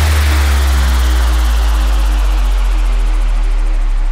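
Outro of an electronic dubstep/bass house track: the beat has stopped, leaving a deep sub-bass note held under a wash of noise that slowly fades and darkens, with faint sustained synth tones.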